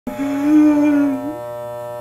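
Corded electric hair clippers buzzing steadily against the scalp during a haircut. Over the buzz, a person's voice holds one long drawn-out note for about the first second and a half, then stops.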